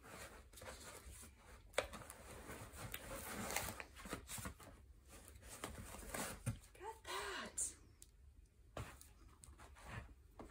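Paper and packing material rustling and crinkling as items are lifted out of a cardboard box, with scattered light taps and a sharper click about two seconds in. A brief murmur of voice comes about seven seconds in.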